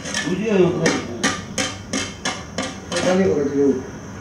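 Long-handled digging tool striking into earth in a steady run of about seven sharp blows, roughly three a second, heard through the screening room's speakers. Men's voices come just before the blows and again near the end.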